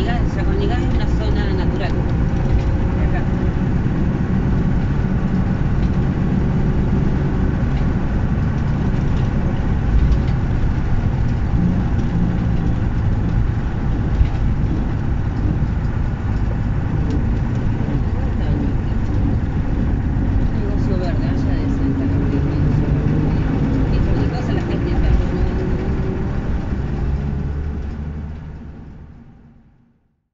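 Engine of a 1962 Mercedes-Benz 312 truck, a six-cylinder diesel, running steadily under way on a dirt road, with tyre and road noise. The sound fades out over the last couple of seconds.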